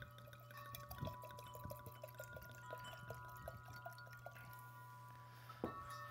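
Red wine being poured from a bottle into a stemless glass: a faint trickle with small glugs, then a knock near the end as the glass bottle is set down on the wooden table. Wind chimes ring faintly behind it.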